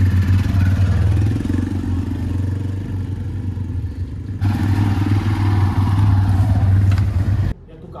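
TVS motorcycle engines running with a steady low drone, cutting off abruptly near the end.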